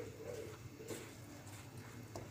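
Faint, soft scraping and a few light ticks of a silicone spatula stirring gram flour, egg and sugar in a glass bowl.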